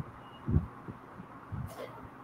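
A few low, dull thumps on a video-call microphone, the loudest about half a second in, with a short breathy hiss near the end.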